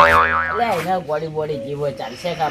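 A comic 'boing' sound effect, a sudden loud wobbling spring tone that dies away within about half a second, over men talking.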